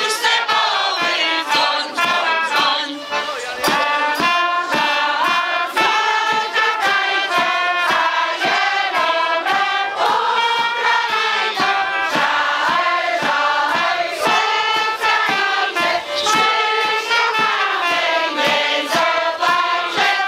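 A large massed choir of folk-ensemble singers, mostly women's voices, singing a Polish folk song together.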